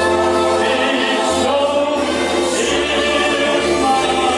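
Karaoke: men singing into microphones over a recorded backing track with a steady bass line, amplified through the club's speakers.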